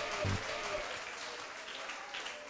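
Audience applause just after a song ends, with a short low note from the band dying away near the start.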